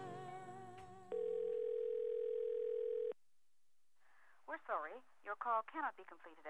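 A telephone tone on a mobile call, a single steady beep lasting about two seconds. After a short pause a voice speaks over the phone line, sounding thin and band-limited.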